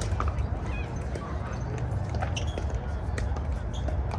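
Pickleball paddles striking a plastic ball: a series of sharp pops from this court and neighbouring ones, the loudest right at the start, over a steady low rumble.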